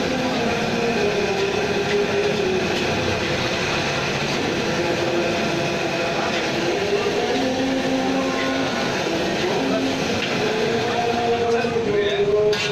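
Steady roar of a street-stall wok burner under a large wok of nasi goreng frying and sizzling as it is stirred with a metal spatula.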